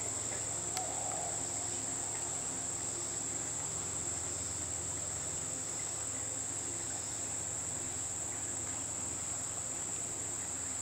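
Steady, high-pitched drone of a summer insect chorus (crickets or katydids) with no break, and a single faint click about a second in.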